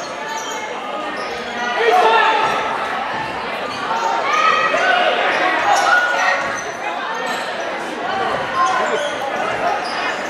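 Basketball dribbling on a hardwood gym floor, with overlapping shouting voices of players and spectators echoing around the hall.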